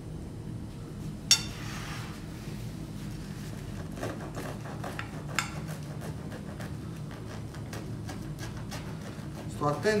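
A knife sawing through a fried calzone and knocking against the plate beneath: a sharp clink about a second in, then lighter clicks around four and five seconds, over a steady low hum.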